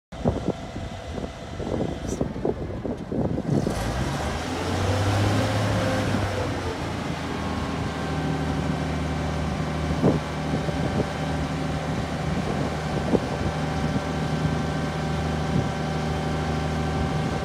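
Large Clark forklift's engine running, uneven at first, then picking up speed and settling into a steady hum under load as the hydraulics raise the hay squeeze attachment up the mast. A few sharp knocks from the machinery come partway through.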